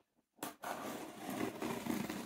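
Scissors cutting through the cardboard and tape of a parcel box, a continuous scratchy noise that starts about half a second in.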